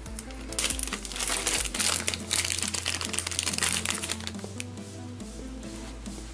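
Small clear plastic parts bag crinkling and rustling in the hands as it is opened and the clutch shoes are taken out, most busily during the first four seconds or so, over steady background music.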